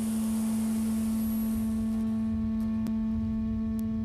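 Conch shell trumpet (Hawaiian pū) blown in a single long, steady note.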